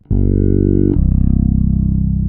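Ibanez GWB 25th Anniversary fretless electric bass being played: one held note, then about a second in a change to a new note that pulses rapidly.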